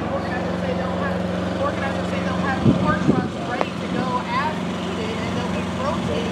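Steady low hum of idling diesel semi-trucks, with a couple of thumps about halfway through.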